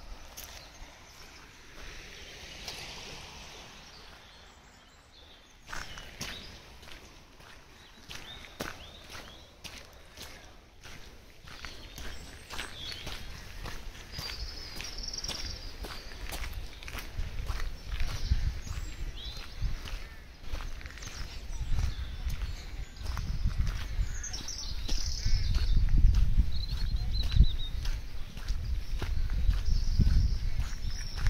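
Footsteps of a walker on wet, muddy ground, with birds calling now and then and wind rumbling on the microphone, growing louder in the second half. The first few seconds hold the steady rush of a flowing stream.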